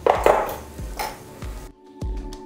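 Metal clinks as an anodized bearing-press tool is hung on a pegboard hook: a sharp knock at the start and a lighter one about a second later, over background music that carries on alone after a brief drop near the end.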